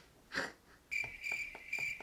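A short sniff, then about a second in a chirping crickets sound effect starts: a high chirp about twice a second, the stock 'awkward silence' gag.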